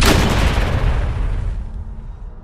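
Cinematic boom sound effect: a sudden heavy crash at the start, dying away over about a second and a half into a low rumble.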